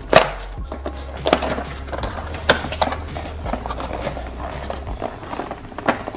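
A cardboard toy box being pushed and torn open by hand: a run of irregular crackles, tears and taps of the card, the sharpest just at the start.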